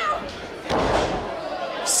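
A wrestler's face and body slamming down onto the wrestling ring's canvas from a sit-out X-Factor: one heavy thud about two-thirds of a second in, with a brief burst of noise after it.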